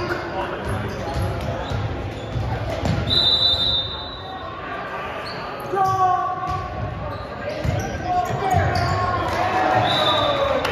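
Volleyball play in an echoing gym: sneakers squeaking on the hardwood court with the thud of the ball, and players and spectators shouting. Short squeaks come about three seconds in, and the shouts get louder from about six seconds on.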